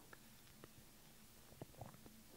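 Near silence: room tone, with a few faint brief clicks, the last two close together near the end.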